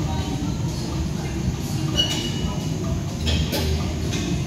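Steady low rumble of gym room noise, with a short high tone about two seconds in and a light clatter of clicks a little after three seconds.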